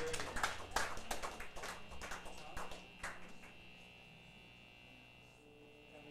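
A small club audience clapping, the claps thinning out and dying away over the first three seconds. After that the room falls quiet apart from a faint steady high tone.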